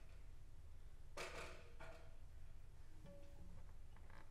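Quiet pause with faint handling noise of an acoustic guitar being set up: a soft rustle about a second in and a single short, soft note near the end.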